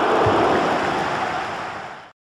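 A steady rushing noise, the sound effect of an animated logo intro, fading away over the last half second.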